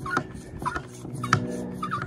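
Chapin hand pump sprayer being pumped up to pressure, a short squeak at each stroke about every half second, with an occasional click of the plunger.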